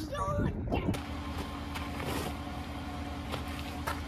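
Brief voices in the first second, then a car engine running with a steady low rumble and a steady hum.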